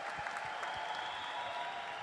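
Audience applause: many hands clapping in a steady, dense patter.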